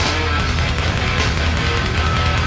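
Hardcore band playing live: loud distorted electric guitars, bass and drums, with a cymbal crash right at the start.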